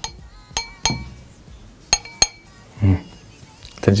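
Glass clinking: about five sharp clinks with a short high ring, in two groups about a second apart, like one glass bottle knocking against another.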